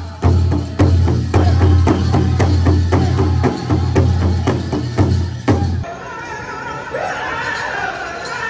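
Powwow big drum struck in a steady beat of about two strokes a second under group singing. The drumming stops about six seconds in, leaving the voices.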